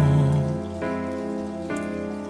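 Slow instrumental music with held notes that change a couple of times, mixed with the steady sound of falling rain.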